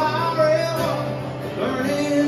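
Acoustic guitars playing a country song live, with a man singing over them.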